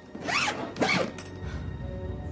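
Two quick swooshes, each sweeping up and back down in pitch, followed by low background music that starts about a second and a half in.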